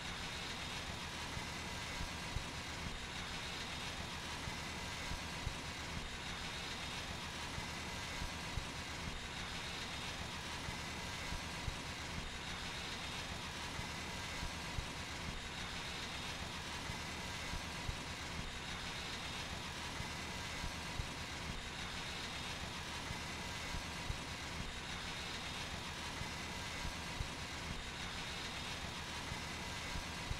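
Engine-driven high-pressure water blast unit running steadily while water jets through a rotating tube-cleaning nozzle inside a test pipe, a constant hiss with short sharp ticks roughly once a second.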